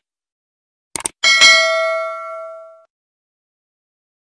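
Subscribe-button animation sound effect: a quick double mouse click about a second in, followed at once by a bell-like notification ding that rings out and fades over about a second and a half.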